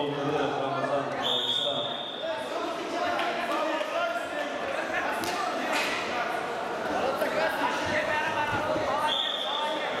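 Referee's whistle blown in two short steady blasts, one about a second in and one near the end, over the hubbub of a wrestling hall: voices calling out and thumps of bodies and feet on the wrestling mat.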